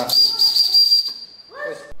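Brass model steam engine's boiler valve lifted by hand, releasing steam with a high, steady whistle and hiss for about a second and a half before it dies away: excess boiler pressure being let off.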